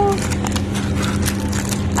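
Paper tulip baking liner crinkling in a run of small crackles as a freshly baked muffin is torn open by hand, over a steady low hum.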